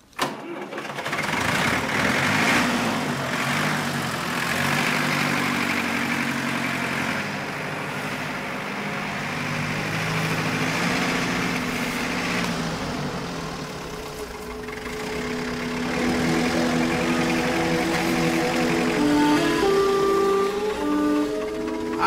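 An old farm tractor's engine running as the tractor drives, under music; held musical notes come to the fore in the second half.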